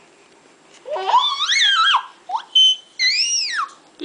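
Baby squealing on her tummy: three high-pitched squeals that rise and fall in pitch. A long one comes about a second in, then a short one, then an arched one near the end.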